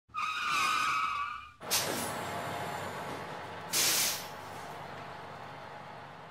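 Vehicle sound effects for an opening title: a wavering high squeal like skidding tyres, then a sudden rush of noise that dies away slowly, and a short sharp hiss, as from an air brake, about four seconds in.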